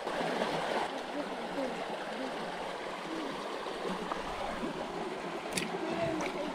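Shallow creek water running steadily over rock. A single short sharp tap comes about five and a half seconds in.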